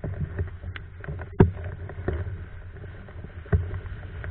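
Windsurf board (a Hypersonic) sailing across lake chop: a steady low rush of water and wind, with a few sharp knocks as the board slaps the waves, the loudest about a second and a half in and another near the end.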